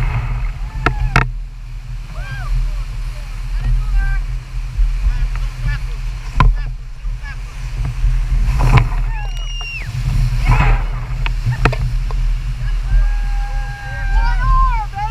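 Large whitewater rapid pounding around an oar raft, a heavy low rumble of rushing water with waves splashing over the boat. People shout several times over the noise, with a long call near the end.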